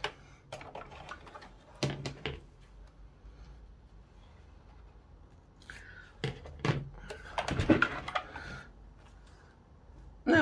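Irregular knocks, clicks and fabric rustling as a felt beret and petersham ribbon are handled and positioned at a sewing machine, with the busiest cluster of knocks about six to eight seconds in.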